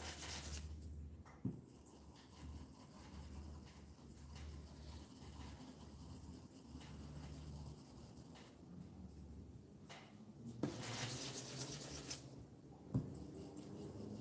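A stencil brush rubbing grey paint through a stencil onto a wooden board, a soft scrubbing that grows louder for a second or two near the end, with a single sharp tap just before the end.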